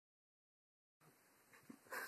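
Near silence for the first second, then a faint hiss and a few short breathy sounds from a person's voice, building up just before speech begins.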